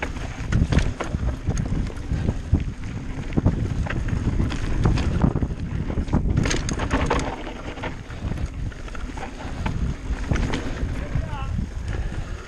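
Mountain bike riding fast down a dirt forest trail: continuous tyre noise over dirt and roots, with frequent knocks and rattles from the bike over bumps, and wind on the microphone.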